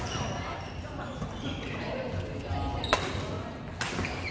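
Badminton rally: rackets striking a shuttlecock, with two sharp hits about a second apart near the end, over background voices in an echoing sports hall.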